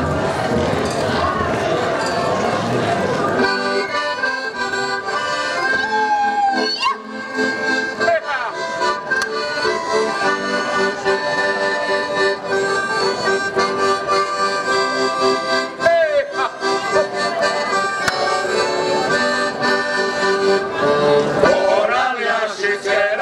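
Accordion playing a Slovak Šariš folk tune as an instrumental introduction, coming in about three and a half seconds in after a stretch of dense, noisy sound.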